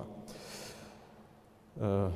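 A lecturer's short in-breath picked up by his podium microphone in a pause between phrases, followed by a moment of room tone before his speech resumes near the end.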